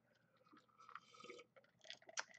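Faint sips and swallows as a man drinks from a glass, scattered through the middle of an otherwise near-silent stretch.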